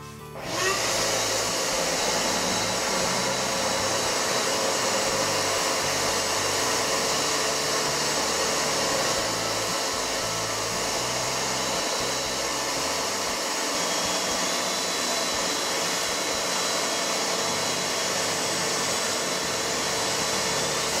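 Shop vacuum switching on about half a second in and running steadily, sucking sawdust off the floor through its hose and a Pemedor cyclone dust separator.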